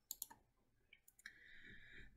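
A few faint computer mouse clicks in quick succession just after the start, then near silence with a faint steady hiss.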